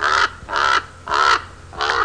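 Raven calling: a run of short calls, about two a second, four in all, lower-pitched than a crow's caw.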